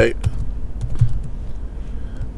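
Computer keyboard keystrokes: a few scattered, light key presses typed at an irregular pace.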